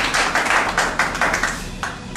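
A group clapping together in quick rhythm, about four or five claps a second, dying away about a second and a half in.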